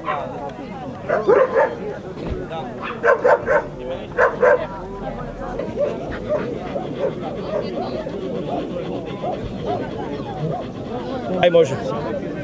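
A dog barking in short groups of two or three sharp barks, about a second apart between groups, with another pair near the end, over the chatter of a crowd.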